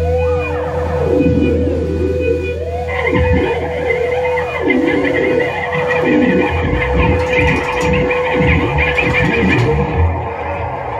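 Live blues-rock band playing a slow song, with electric guitar lines swooping and bending in pitch over one long held note and a steady deep bass. The sound fills out about three seconds in, when a busier upper layer joins.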